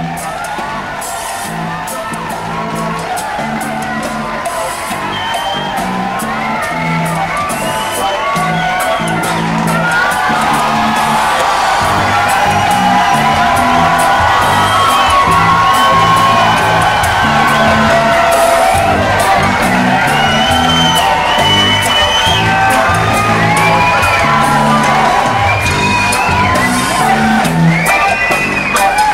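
Live band playing a repeating groove on drum kit and bass guitar while a crowd cheers and whoops, the cheering growing louder through the first half.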